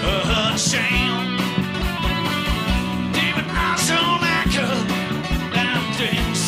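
Live rock band playing: bass, electric and acoustic guitars and drums with a steady kick-drum beat, and a lead vocal over the top.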